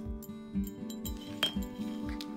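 A drinking glass lying on its side on a wooden floor clinks sharply once, about one and a half seconds in, as a small dog's paw knocks at it. Background music with a steady beat plays under it.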